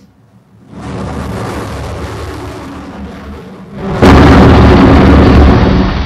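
A steady rushing noise as a BrahMos cruise missile flies in toward its target. About four seconds in, a sudden, much louder blast as its warhead strikes the target ship, lingering as a heavy rumble that ebbs near the end.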